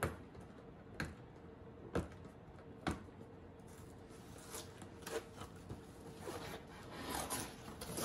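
Cardboard packaging handled and opened by hand: four sharp clicks about a second apart, then cardboard scraping and rustling that grows busier near the end.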